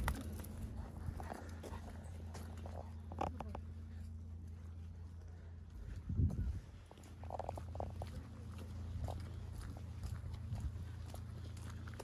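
A dog being walked on a lead: scattered footsteps and small dog sounds over a steady low hum, with one loud thump about six seconds in.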